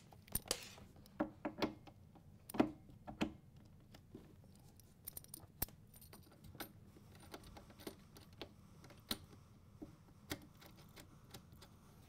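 Faint scattered clicks and light rattles of a TIG torch's quick-connect plug and cable being handled and fitted into a welder's front-panel sockets, busiest in the first few seconds with only a few clicks later.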